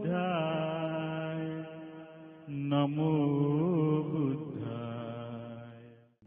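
Slow Buddhist devotional chanting: one voice holding long, drawn-out notes with a gently wavering pitch. It comes in two phrases with a short break about two and a half seconds in, and fades out at the end.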